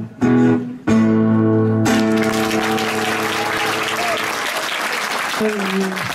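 Acoustic guitar closes the song with two last strummed chords that ring out, then the audience applauds for several seconds.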